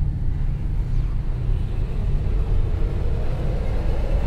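A loud, steady low rumble with a faint higher tone that creeps slowly upward toward the end: a suspense drone in a horror film's soundtrack.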